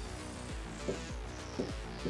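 Dry-erase marker squeaking and scratching on a whiteboard as a word is written, over faint background music.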